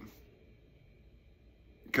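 A pause in a man's speech: faint room tone, with his voice starting again near the end.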